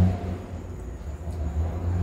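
Road traffic passing close outside, heard from indoors: a low vehicle rumble, loudest right at the start, then ebbing and swelling again.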